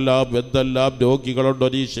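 A man chanting a prayer: a recitation in short phrases, each syllable held on a steady pitch, with brief breaks between.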